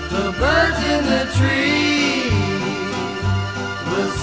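1960s pop song: a sung vocal line over a full instrumental backing, with a long held note in the middle.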